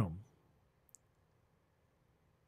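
Near silence in a pause between spoken words, with one faint, brief click about a second in.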